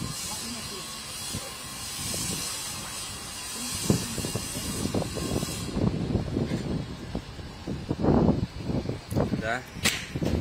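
Street ambience: faint distant voices and scattered small knocks and movement noise, under a steady hiss that cuts off suddenly a little past halfway.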